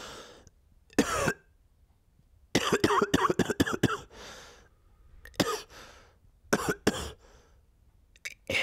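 A man coughing in harsh fits: a cough about a second in, a rapid run of coughs from about two and a half to four seconds, then a few more single coughs near the end.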